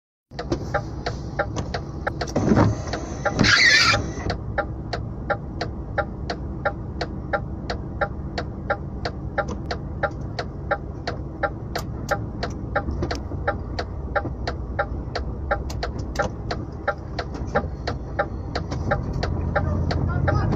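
Truck cab interior with the engine rumbling steadily and a regular ticking, about two and a half ticks a second. There is a thump about two and a half seconds in and a short loud burst of noise about a second later.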